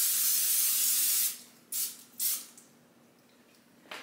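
Aerosol cooking spray hissing from the can onto a metal baking pan: one long spray that stops about a second in, then two short bursts.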